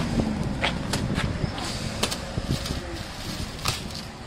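Plastic pallet wrap crinkling and rustling as it is handled, with a few sharp crackles, over a low steady rumble.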